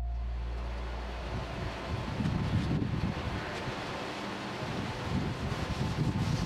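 Wind on the microphone: a steady hiss with gusty low rumbles from about two seconds in.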